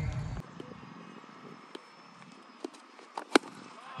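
Quiet outdoor background with a few faint clicks, then one sharp knock about three and a half seconds in: a cricket bat striking a tennis ball.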